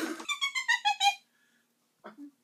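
A person laughing in a high-pitched giggle: about seven quick, short notes that step down in pitch, stopping a little over a second in.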